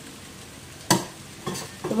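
Metal spoon stirring and pressing cooked potatoes in a stainless steel kadhai, to test whether they are done, over a faint sizzle. One sharp clink of spoon on pan about a second in, then a couple of softer knocks.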